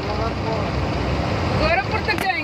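Truck engine and road noise inside the moving cab, a steady low rumble, with brief voices at the start and near the end.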